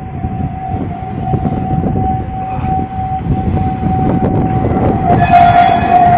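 Electric street tram passing close by, its motors giving a steady high whine over a low rolling rumble. The whine grows louder and fuller in the last second as the tram draws alongside.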